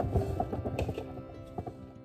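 Grapes dropping off a plate into a clear plastic fridge bin: a run of light knocks that thins out and fades, over background music.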